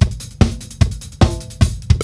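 Playback of a multitrack-recorded acoustic drum kit playing a steady groove: kick and snare hits about two and a half times a second, with hi-hat and cymbals ringing between them.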